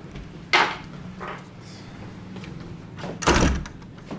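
A door being shut. There is a sharp knock about half a second in, a lighter one a moment later, and a heavier thud near the end, over a steady low hum.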